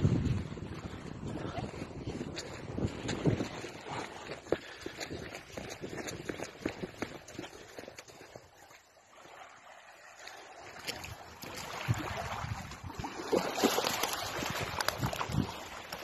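Wind buffeting a phone microphone at the shoreline, with small waves washing on the sand and scattered knocks from handling. It drops quieter about halfway through and picks up again near the end.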